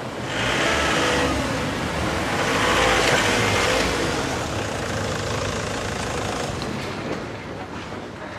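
A van's engine running as it moves forward. The sound swells about a second in and again around three seconds, then eases off.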